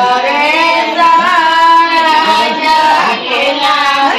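A woman singing a traditional Gangaur folk song in a high voice, holding one long steady note through the middle.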